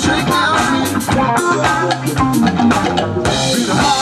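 A live rock band playing: electric guitars, bass guitar and drum kit in a steady groove, with regular drum hits throughout.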